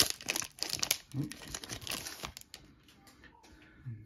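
Foil booster-pack wrapper crinkling and tearing as it is ripped open by hand, a dense crackle for the first couple of seconds that then dies away to faint handling.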